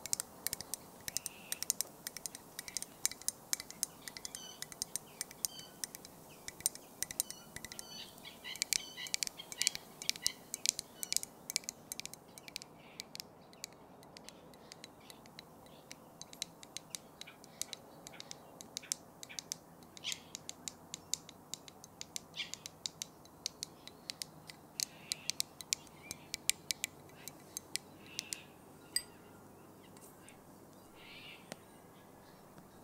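Light tapping and clicking in irregular quick runs, with a few bird chirps now and then.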